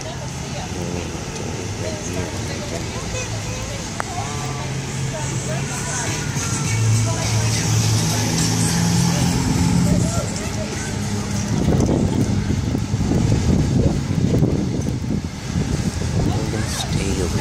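IC CE school bus engine running with a steady low hum that grows stronger in the middle, then a rougher, louder rumble for a few seconds near the end.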